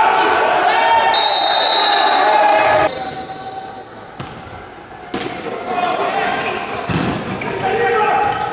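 Volleyball being struck in a rally: a jump serve about four seconds in, then two more sharp hits about one and three seconds later, the last with a heavier thud. Before the serve, a loud held tone over shouting voices cuts off abruptly about three seconds in.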